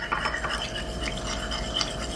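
A metal spoon stirring in a porcelain cup: continuous scraping against the inside of the cup, with quick light clinks.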